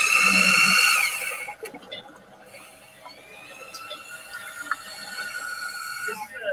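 A high-pitched whine or squeal, loud for about the first second and rising slightly in pitch before it cuts off. A fainter whine comes back in the second half.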